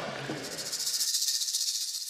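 A high-pitched, fast-pulsing rattling hiss, like an edited-in shaker sound effect, pulsing about ten times a second. About a second in, the lower sounds under it cut off suddenly and the hiss carries on alone.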